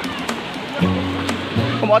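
Background music: a song with held bass notes and a steady beat, the singing voice coming back in near the end.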